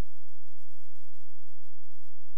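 Idle audio from a DVD/VCR player showing its menu with no programme playing: a steady low electrical hum under faint hiss, with soft low thumps at irregular spacing, about three or four a second.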